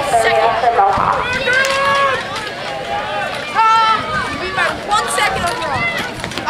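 People shouting and cheering, with several long drawn-out yells.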